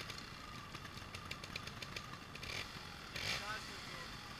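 Trials motorcycle engine idling quietly, with a person's voice calling out about three seconds in.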